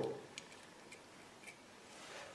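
A few faint, irregular light clicks from a small breadboard power-supply module, a plastic board with pin headers and jumpers, being handled in the fingers.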